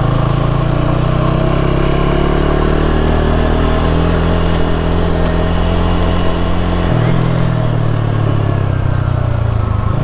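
TVS Apache motorcycle engine running under way on a dirt track, its note climbing slightly, then changing abruptly about seven seconds in.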